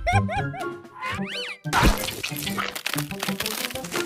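Cartoon soundtrack music: a quick run of short bouncing notes, then a whistle-like glide up and back down, giving way to busy music with a fast clicking beat.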